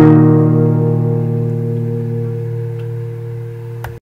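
The final strummed chord of an acoustic guitar ringing out and fading away slowly. A light click comes just before the end.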